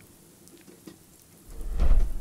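A soft rain-shower sound effect plays quietly. About one and a half seconds in, a loud, deep rushing whoosh swells up.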